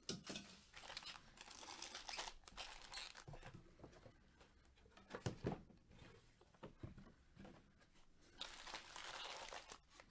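Faint crinkling of foil-wrapped trading card packs as they are handled and restacked, in irregular rustles with a few light taps midway.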